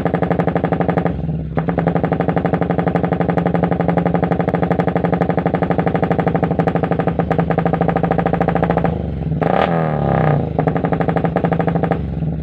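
Yamaha single-cylinder motorcycle idling loudly through an aftermarket stainless-steel CAT racing exhaust, with a pulsing beat. Near the end the throttle is blipped once in a short rev that rises and falls back to idle.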